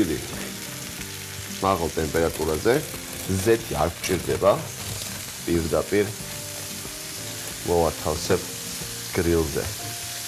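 Food sizzling on a hot ridged stovetop grill pan as slices of melon are laid on it, a steady frying hiss throughout. A voice comes in over it in several short stretches.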